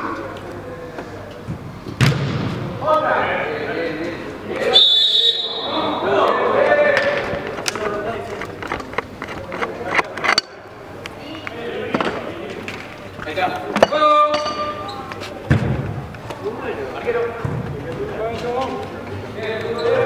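Indistinct shouting from players in a large indoor sports hall, broken by several sharp thuds of a football being kicked.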